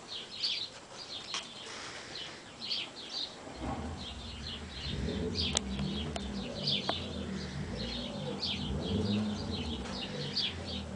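Small birds chirping in short, repeated bursts. From about three and a half seconds in, a low rumbling sound joins and runs on underneath.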